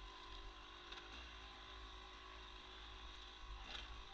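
Faint two-stroke engine of a Yamaha YZ250 dirt bike running steadily under riding, its pitch shifting slightly a couple of times.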